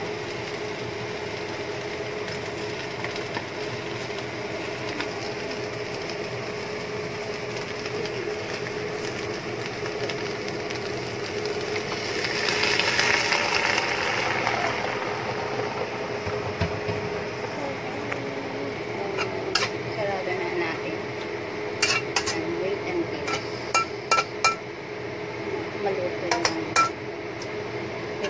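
Lettuce stir-frying in a wok with a steady sizzle, which swells louder for a few seconds about midway. In the second half, the spatula clicks and knocks against the wok many times as the leaves are tossed.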